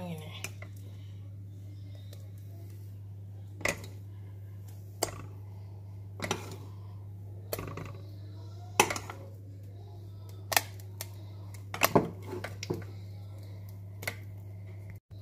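A metal spoon clinking against a glass mixing bowl and a metal cake tin while thick cake batter is scooped and dropped in dollops: about eight sharp clicks, one every second or so, over a steady low hum.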